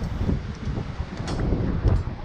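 Wind rumbling on the microphone, with a few light clicks and a knock near the end as a hoop drop net is set down on the pier's grated deck.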